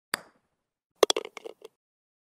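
Logo-intro sound effect: a single sharp click, then about a second later a quick run of six or seven clicks and taps that is over in under a second.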